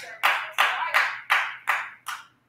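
Hand claps in a steady rhythm, about three a second, five in all, each ringing briefly in the church hall.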